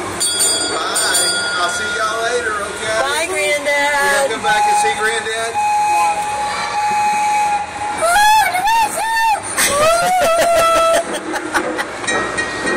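A coin-operated kiddie train ride's recorded train sounds: a bell ringing near the start, then long whistle-like tones and three short rising-and-falling calls about two-thirds of the way through, mixed with voices.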